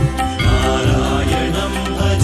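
Malayalam Krishna devotional song: chant-like singing in long held notes over a tabla rhythm.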